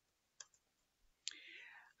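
Near silence broken by two faint computer keyboard clicks, the second about a second and a half in, followed by a short, soft intake of breath just before speech resumes.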